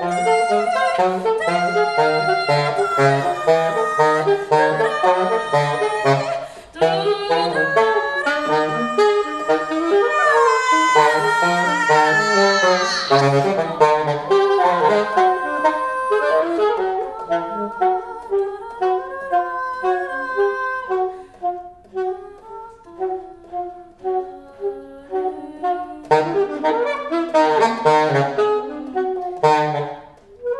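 Saxophone improvising fast runs of notes, dense at first, thinning to short scattered notes in the second half, with a busier flurry near the end.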